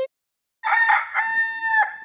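A rooster crow sound effect: one crow of about a second and a half, rough at first, then held on a steady pitch, and cut off sharply. It is preceded by a short blip.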